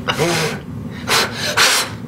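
A woman blowing hard through her lips onto a thumb held up close to her face. First a short breathy sound with a bit of voice in it, then two sharp puffs of breath about half a second apart.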